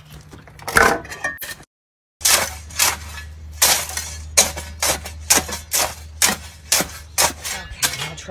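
Steel shovel digging and scraping in gravel and crushed stone, a series of sharp crunching strikes about two a second, with a brief dropout about two seconds in and a low steady hum underneath.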